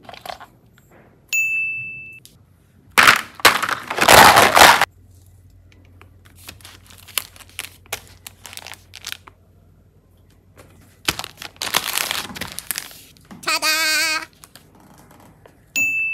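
Hands crinkling and rustling plastic wrapping and handling plastic boxes, loudest in two stretches of a couple of seconds each, with small clicks between them. A bright chime rings out and fades once early on and again at the very end, and a short wavering tone sounds near the end.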